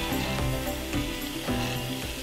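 Wood-turning chisel shaving a wooden billiard cue shaft as it spins on a lathe, a steady hissing scrape, under background music with held notes.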